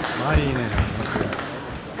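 Indistinct voices talking in a large sports hall, with a couple of dull knocks in the first second.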